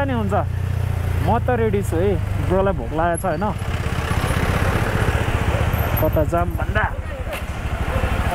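Motorcycle engine running steadily at low speed through town traffic, with a rushing hiss of wind on the helmet microphone that grows in the second half.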